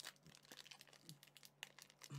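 Faint crinkling and light ticking of a foil Pokémon booster pack wrapper and cards being handled, with a slightly sharper click near the end.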